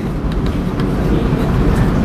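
Chalk drawing on a blackboard, a few faint taps and scrapes, over a steady low rumble of background noise.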